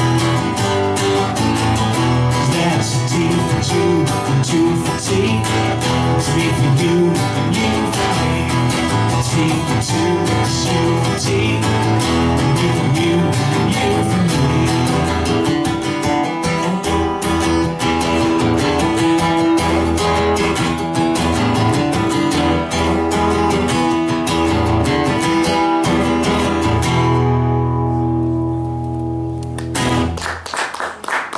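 Acoustic guitar strummed steadily through a song's instrumental ending. About three seconds before the end the strumming stops and a last chord rings out.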